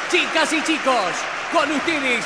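A crowd of many voices shouting and cheering at once over a steady wash of noise, right after the music has stopped.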